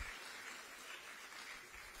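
Faint audience applause, an even clapping with no voices over it.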